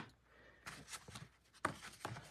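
Faint rustling and handling noise with a single light click near the middle, after a moment of near silence.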